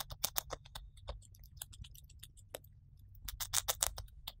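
Syrian hamster nibbling the leafy green top of a carrot close to the microphone: a fast, irregular run of crisp little crunches and clicks, with a louder flurry near the end.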